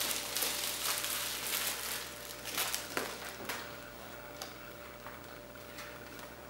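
Plastic shrink-wrap being pulled off a set of booklets and crumpled by hand: an uneven crinkling crackle that dies down after about three and a half seconds.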